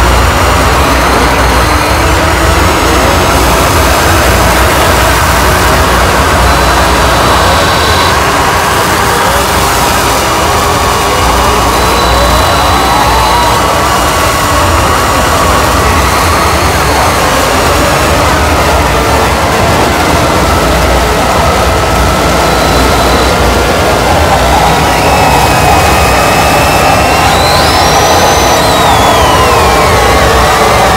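Harsh noise music: a loud, dense wall of distorted noise over a heavy low rumble. Thin electronic tones glide up and down through it, with several sweeping tones near the end.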